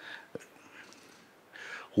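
A pause in a man's speech into a handheld microphone: faint room tone with a small click early on, then a soft intake of breath just before he speaks again.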